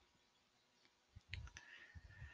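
Near silence, with a faint click and a few soft low bumps about a second and a half in.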